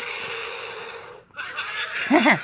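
A person making a long breathy hissing noise with the mouth. It breaks off for a moment a little over a second in, then starts again.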